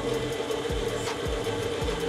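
Electric stand mixer running, its beater working butter and powdered sugar into frosting, with a steady motor hum.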